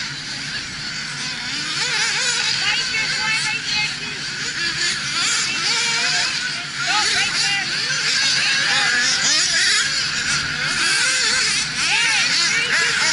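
Several nitro RC buggy engines running at high revs, their high-pitched whines rising and falling and overlapping as the cars race around the track.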